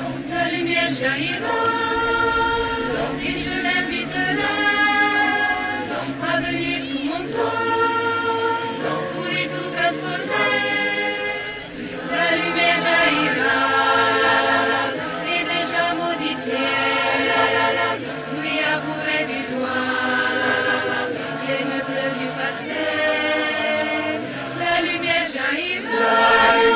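A choir singing a French song in several voice parts, moving through a series of held chords. There is a short breath between phrases about halfway through.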